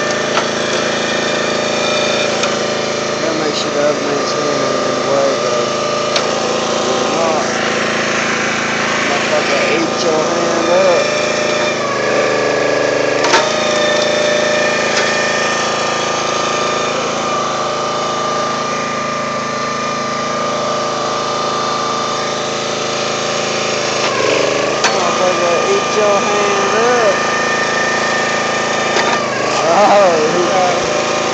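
Small gas engine running steadily on a log splitter as wood is split into wedges, with cracking of the wood and one sharp crack about thirteen seconds in.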